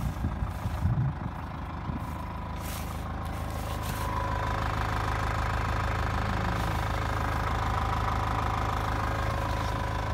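A Land Rover Series 3's 2.25-litre three-main-bearing diesel engine idles steadily, heard from the rear of the vehicle near the exhaust. It grows a little louder about four seconds in.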